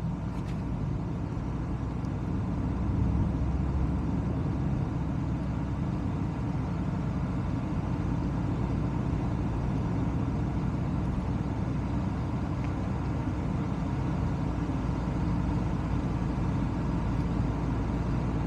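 Steady road noise from a car driving along a suburban street: an even, low rumble of tyres and engine that holds at one level with no distinct events, picked up by a camera mounted on the outside of the car.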